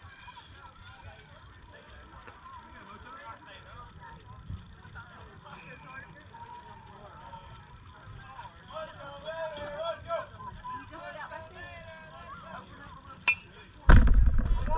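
Distant voices of spectators and players chattering, rising for a couple of seconds past the middle. Near the end comes one sharp crack, as a bat is swung at a pitch.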